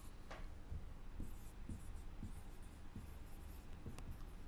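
Marker pen writing on a whiteboard: a faint run of short strokes as words are written out.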